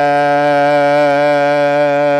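A man's voice chanting an Arabic devotional poem (a Mouride xassida), holding one long note at a steady pitch on the last syllable of a line.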